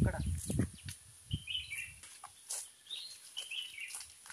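A bird chirping in short clusters of high notes, three times across the middle and end, after a man's voice at the start; a few faint clicks in between.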